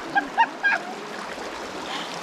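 Creek water running steadily around people wading through it. In the first second there are a few short, high-pitched laughs.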